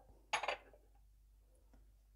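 One short handling noise about half a second in, from a hand scattering chopped coriander leaves over salad in a ceramic bowl; the rest is near-silent room tone.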